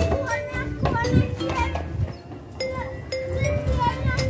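Children's voices, short calls rising and falling in pitch, over background music with steady held notes.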